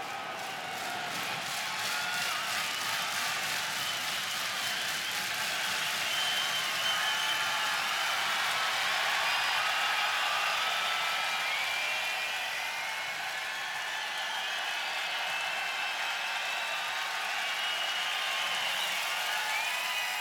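Large arena crowd clapping and cheering steadily, with whistles and shouts rising above the applause.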